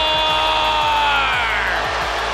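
A hockey play-by-play announcer's drawn-out goal call: one long held shout that slides down in pitch and fades near the end, over background music with a steady beat.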